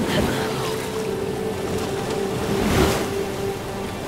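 Rough sea water splashing and surging around a surfer paddling through waves, with a stronger surge a little before three seconds in. A steady held musical drone plays underneath.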